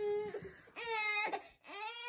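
Infant fussing: three short, steady-pitched cries as she strains on her tummy to crawl. They are the frustrated or tired cries of a baby who is, in her mother's words, tired or just angry at herself.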